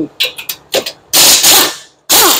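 Air-powered wrench on a hose spinning out a 17 mm brake caliper bracket bolt. It runs in a few short bursts, then two longer runs with a hiss of air about a second in.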